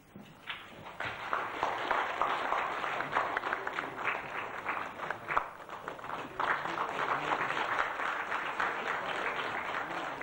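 Audience applauding, starting about a second in and continuing steadily.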